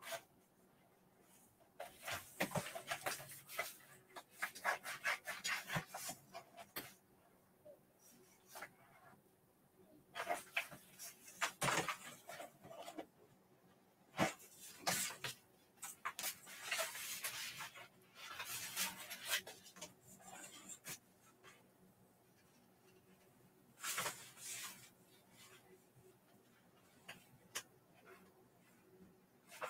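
Small scissors snipping through a printed vinyl sheet by hand, in several runs of quick cuts separated by pauses, with the sheet crackling as it is turned.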